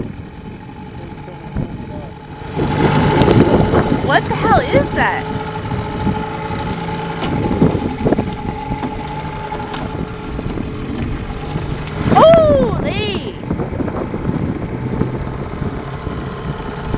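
Small outboard motor running steadily in gear with a low hum, while the boat moves slowly over choppy water. Louder bursts of voices come in about three seconds in and again near twelve seconds.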